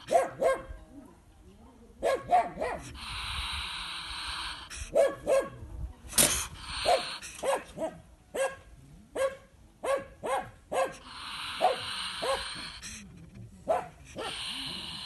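A trapped wild European polecat giving short, sharp yapping calls over and over, singly and in quick runs of two or three, with short pauses between the runs.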